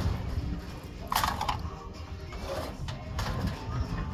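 A steel-caged IBC tote being shifted by hand on a trailer bed: a few knocks and a short scrape about a second in, over a steady low rumble.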